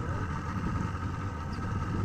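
Small boat's outboard motor idling: a steady low rumble with a faint constant whine above it.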